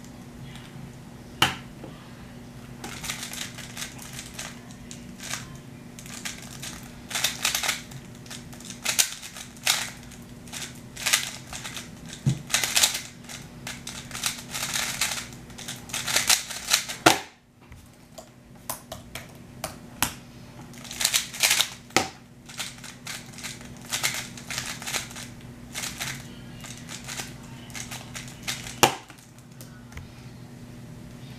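A 3x3 speedcube being turned fast by hand: rapid runs of clicking, clacking plastic as the layers snap round, with a sharper knock about seventeen seconds in and a brief pause after it. A low steady hum runs underneath.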